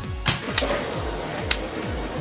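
A spring-powered pump-action toy salt blaster firing, heard as two sharp clicks about a second apart, the first the louder, over background music.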